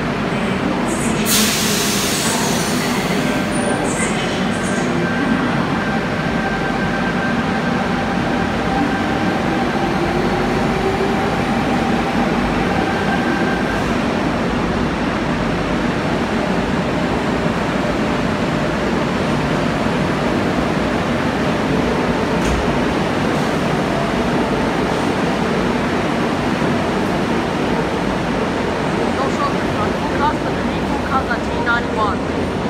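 A double-deck electric suburban train pulls out of an underground station platform. A loud hiss of air comes about a second or two in, then the motors whine with a rising pitch as it gathers speed, over a steady rumble of carriages rolling past and echoing in the tunnel.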